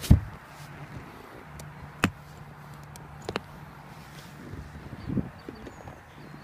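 A padded boat hatch lid on gas shocks pressed shut with a single thump right at the start, then two sharp clicks and a few soft knocks of handling, over a faint steady low hum.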